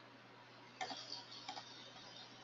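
A short run of light, sharp clicks from someone working at a computer, starting just under a second in, over a faint steady hum.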